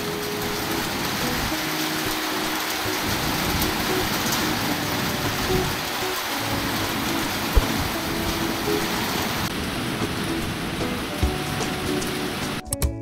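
Heavy rain pouring down on a paved street and parked cars, a steady dense hiss, with one sharp knock about seven and a half seconds in.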